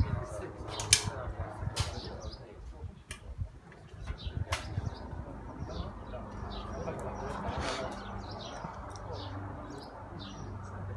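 Birds chirping, with four sharp cracks in the first half, the first the loudest.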